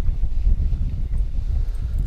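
Wind buffeting the camera microphone: a loud, uneven low rumble.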